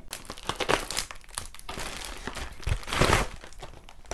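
Parcel packaging crinkling and rustling in the hands as it is unwrapped to get at a cardboard box, with a louder crinkle about three seconds in.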